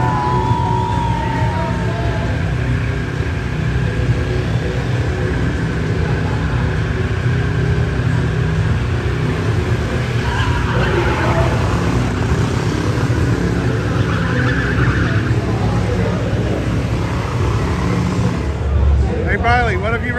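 Vintage bullet-nose Studebaker doing a burnout: its engine held at high revs while the rear tyres spin and squeal on the concrete, with a high gliding squeal near the start. A voice comes in near the end.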